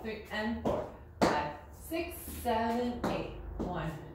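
A woman's voice calling out dance counts, over the taps and scuffs of cowboy boots stepping on a tile floor.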